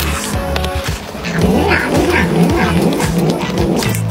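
A cat makes several short vocal calls from about a second and a half in, over background music with a steady beat.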